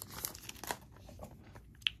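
Faint rustling and light clicks of trading cards and their foil booster-pack wrapper being handled, mostly in the first second.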